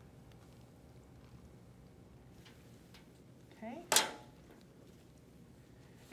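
Quiet handling of small plastic catheter-prep equipment on a table, with faint ticks and one sharp click about four seconds in, the loudest sound.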